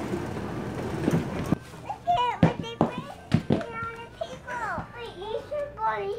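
Young children's voices chattering and calling out, with several sharp taps among them. The first second and a half is a steady rushing noise that cuts off suddenly.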